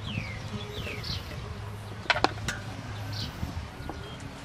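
Birds chirping with short calls that slide down in pitch, over a low steady hum. A little over two seconds in come two sharp clinks of a spoon against a stainless steel mixing bowl.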